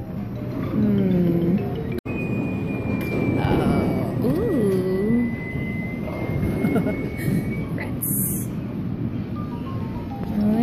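Arcade din around a claw machine: electronic game music and jingles with voices in the background, and a thin steady high tone through the middle. The sound drops out briefly about two seconds in.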